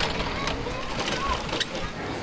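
Outdoor ambience: indistinct distant voices over a steady low rumble, with a few faint clicks.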